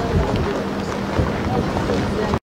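Wind buffeting the camera microphone in a low, gusty rumble outdoors, with a steady low hum joining about halfway.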